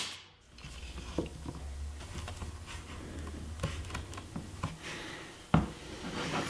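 Screw bar clamp being fitted and tightened by hand on a glued wooden leg: faint rubbing, scraping and small clicks of metal and wood, with one sharper knock about five and a half seconds in, over a faint low hum.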